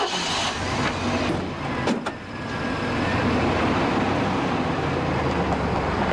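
Pickup truck engine running as the truck drives off, growing louder about halfway through and then holding steady. Two short knocks come about one and two seconds in.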